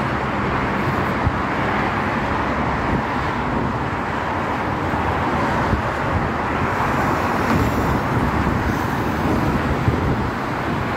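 Steady traffic noise from a multi-lane freeway: the tyres and engines of many passing cars blend into one continuous rush.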